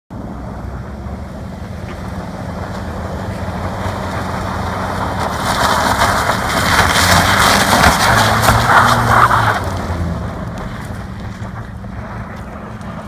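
A car driving around an icy, snowy parking lot, its engine running under a hiss of tyres on ice and slush. It grows louder as the car swings past nearest, about halfway through, then fades as it pulls away.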